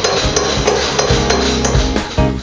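Rapid, repeated clanging of hammers striking cymbal bronze in a cymbal workshop, with music playing over it.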